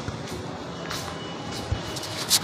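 Faint background music and a steady rumble of a large indoor hall, with a few soft low thumps of footsteps from someone walking, the strongest near the end.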